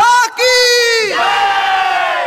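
A high voice calling out in long, drawn-out held notes. The first note falls away about a second in, and a second note is held and slowly fades.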